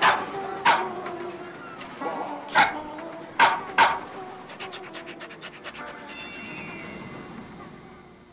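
A small dog yapping as the watermelon dog runs: five sharp, short barks in the first four seconds, then a quick run of light ticks. About six seconds in, a short held musical chord comes in and fades away.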